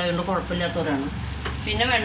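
Sliced onions, green chillies and newly added chilli and spice powder frying in oil in a stainless steel pan, with the sizzle and the scrape of a steel spoon stirring.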